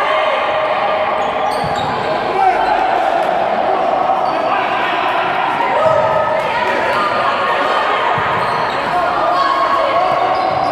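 Futsal match sounds in an echoing sports hall: ball strikes and players' feet on the court, with players and spectators calling and shouting throughout.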